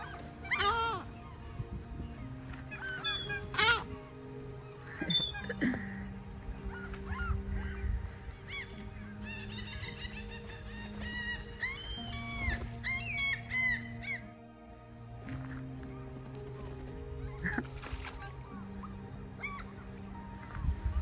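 Gulls, mallard ducks and crows calling repeatedly, over steady background music. The calls come thickest in a quick run about halfway through.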